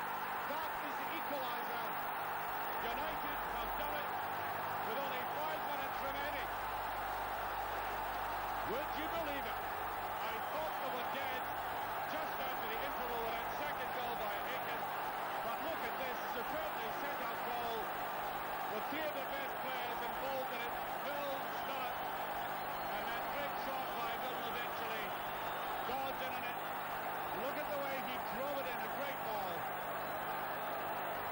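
Large football stadium crowd cheering and chanting without a break, a mass of voices celebrating a goal.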